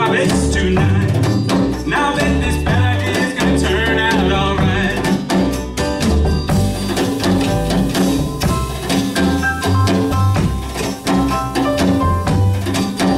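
Small live band playing a song: acoustic guitar, piano, upright bass and drums, with a man's voice singing at the microphone in the first part. Crisp drum and cymbal strokes come through more clearly in the second half.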